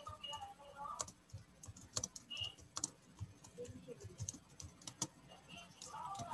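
Typing on a computer keyboard: a run of irregular key clicks as a short sentence is typed.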